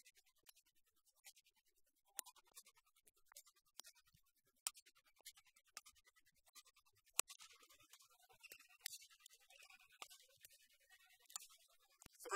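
Faint, sharp hits of badminton rackets on a shuttlecock during a rally, roughly one a second, in an otherwise near-silent hall.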